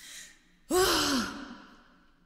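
A woman's breathy, voiced sigh: a short breath in, then about two-thirds of a second in a long exhaled "haah" that falls in pitch and fades away.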